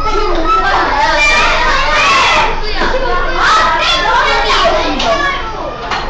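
A classroom full of young children talking and calling out at once, many high voices overlapping with no pause.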